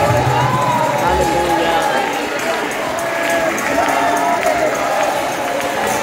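Many voices of a church congregation raised together, overlapping so that no single voice stands out, some of them held as long cries.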